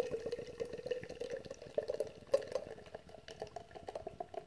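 Beer pouring from an aluminium can into a tilted glass: a soft, steady pour with a fine crackling fizz as the foam head builds.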